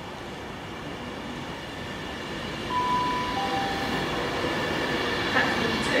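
Class 390 Pendolino electric train arriving along the platform, its rumble and steady whine growing louder as it draws near and runs past. A brief falling two-note tone sounds about three seconds in.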